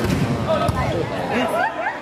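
Two sharp hits of a volleyball, a serve at the start and the receiving pass about two-thirds of a second later, over a loud crowd of shouting and chattering voices in a sports hall.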